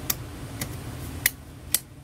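Small sharp clicks from the AR-15 upper receiver's ejection port dust cover door being taken off by hand: four ticks about half a second apart, over a faint hiss of handling.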